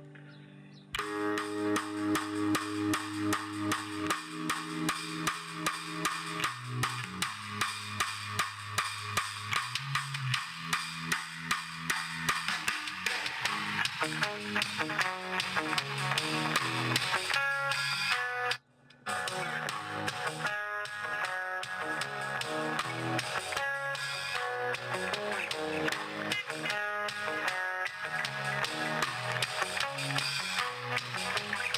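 Guitar-led music with a steady beat played through a bare old loudspeaker with no enclosure, driven by a small TDA7297 amplifier board; the speaker rattles slightly, which the owner puts down to the missing cabinet and a torn, aged cone. The music cuts out briefly about two-thirds of the way through.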